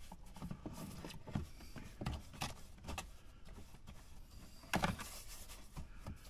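Quiet, scattered scrapes and clicks of a metal part being worked by hand at a workbench, with a louder rubbing scrape about five seconds in.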